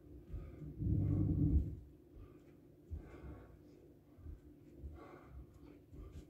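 A man breathing hard while recovering between burpees, with one longer, louder exhale about a second in and a few fainter breaths after it.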